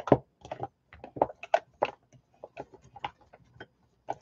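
Craft supplies, including jars, being handled and shifted about on a desk: a run of irregular small clicks and knocks, a few a second, the sharpest right at the start.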